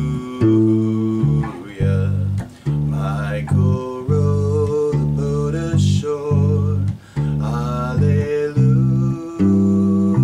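Electric bass guitar playing a steady line of low notes in G major, about one new note a second, over a guitar backing track in an instrumental passage of a folk song.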